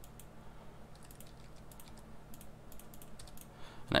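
Faint, irregularly spaced clicks from a computer mouse and keyboard in use, a few a second at most, over a low steady electrical hum.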